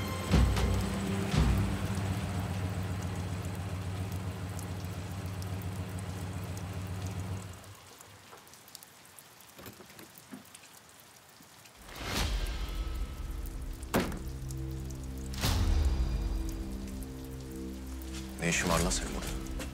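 Steady rain falling, with a low sustained musical drone under it that drops away for a few seconds midway and then returns. Three sharp knocks come about a second and a half to two seconds apart in the second half.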